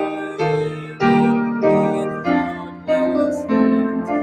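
Piano playing slow chords, each struck and left to fade before the next, about one every half second to a second.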